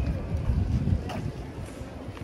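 Wind buffeting the microphone: a low rumble, strongest in the first second, with faint voices of passers-by behind it.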